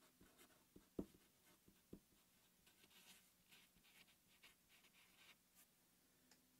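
Faint squeak and scratch of a red Sharpie felt-tip marker writing a couple of words on paper, with two soft taps about one and two seconds in.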